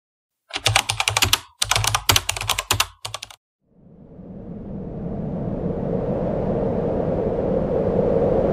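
Three short bursts of rapid clicking, each cut off into dead silence. Then a wash of steady background noise fades in and grows louder.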